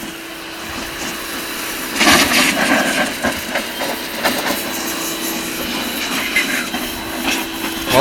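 Huter W105-GS electric pressure washer running with a steady hum while its high-pressure jet hisses and spatters against a car tyre and steel wheel rim. The spray noise gets louder and more uneven about two seconds in.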